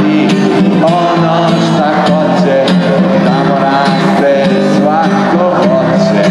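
A man singing and playing an acoustic guitar live through microphones, a steady song with a melody that rises and falls.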